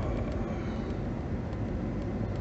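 Steady road and engine noise heard inside a moving car's cabin, mostly a low rumble.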